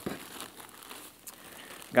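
Soft crinkling of plastic-wrapped merchandise being rummaged through in a cardboard box, with a small click near the start.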